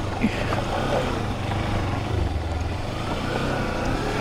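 Kawasaki Versys X300's parallel-twin engine running steadily as the motorcycle rides along a dirt trail, under a haze of wind and trail noise.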